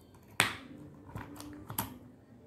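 Plastic toy bricks and gears clicking and knocking as pieces are pressed together and the assembled cube is handled. There is one sharp click about half a second in, then a few lighter clicks.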